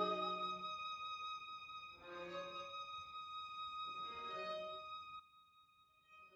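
String quartet playing quietly: a high violin note held steadily while lower strings swell in twice, then the music stops about five seconds in as the piece ends.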